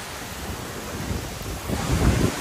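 Steady rushing of a shallow stream and nearby waterfall, with wind and spray buffeting the microphone and growing stronger near the end.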